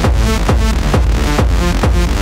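Techno track with a steady kick drum, about two beats a second, each kick dropping in pitch, under layered sustained synth tones.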